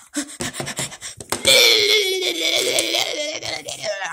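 A high-pitched voice letting out one long drawn-out wail that slowly falls in pitch, starting about a second and a half in. Before it come a few short clicks and brief vocal sounds.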